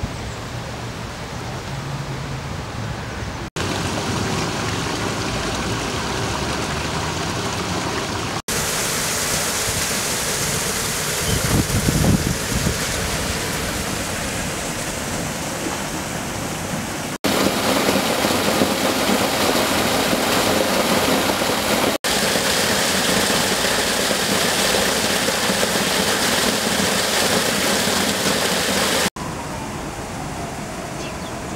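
Steady rushing outdoor background noise with no clear single source. Its character changes abruptly five times as the clips change, with a brief deeper rumble about eleven seconds in.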